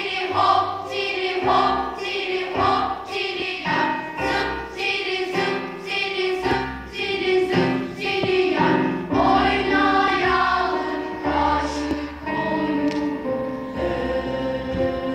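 Children's choir singing a Turkish folk song in short rhythmic phrases over instrumental accompaniment with sustained bass notes and a regular percussive beat.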